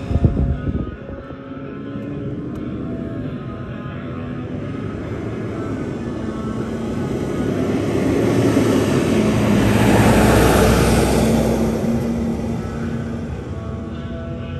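An aircraft passing overhead: its engine noise swells gradually to a peak about ten seconds in, then fades. A brief loud thump comes right at the start.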